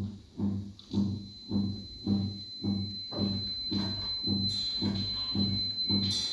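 Live experimental electronic music: a low, deep pulse repeating just under twice a second, joined about a second in by a steady high whistling tone, with hissy noise building up near the end.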